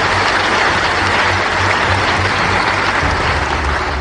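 Audience applauding: a steady, dense clatter of many hands clapping.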